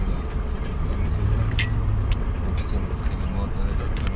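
Steady low drone of a moving limousine heard from inside its cabin, with voices talking and a sharp champagne-glass clink about one and a half seconds in.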